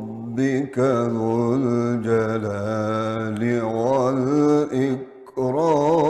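A man reciting the Quran in melodic tajweed style: long held notes whose pitch wavers and turns. The voice breaks for a breath about a second in and again a little after five seconds.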